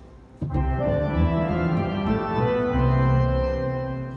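Church organ played with both hands over deep sustained bass notes: a run of held, stepwise-changing notes, typical of a C-major scale exercise, coming in about half a second in and easing off near the end.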